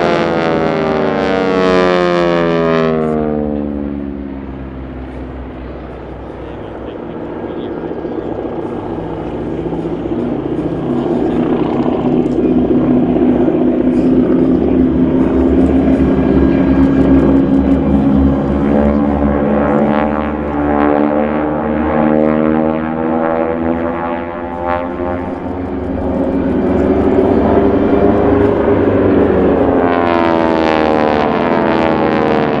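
Radial piston engines and propellers of a four-ship formation of T-6 Texans flying aerobatics overhead. Early on the pitch falls as the planes pass, and the sound fades. It then builds into a steady, loud drone that swells and rises again near the end, with a phasing sweep as the engines mix.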